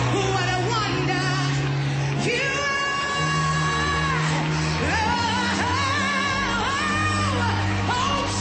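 Live gospel worship song: a woman sings lead with long held, gliding notes over a band with keyboard and a steady bass line.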